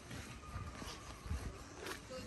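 Footsteps walking on grass: soft low thuds about twice a second, with a faint thin tone drifting down in the background.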